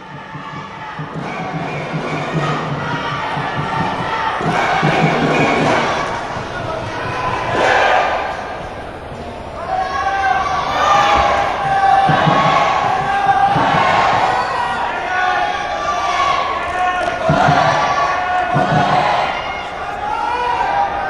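A large arena crowd chanting and cheering, swelling and fading in waves every second or two, with scattered thumps.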